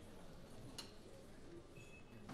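Near silence: quiet club room tone with faint, indistinct murmuring and a single small click about a second in.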